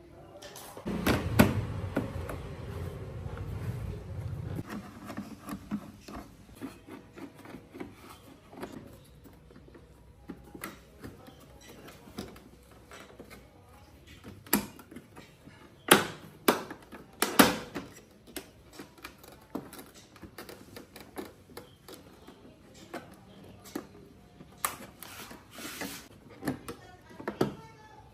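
Hard plastic body panels of a Yamaha NMAX scooter being pried, pulled and handled as the front cover comes off: a run of irregular clicks, snaps and knocks, with a cluster of sharp snaps about two-thirds of the way through. There is a low rumble in the first few seconds.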